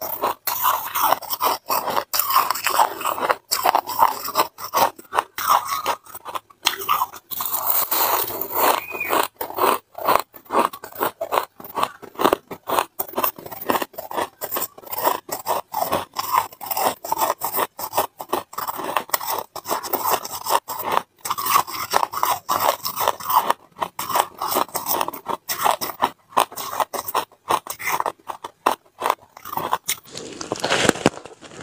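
Close-miked crunching of white ice being chewed, a dense, continuous run of sharp crunches several times a second.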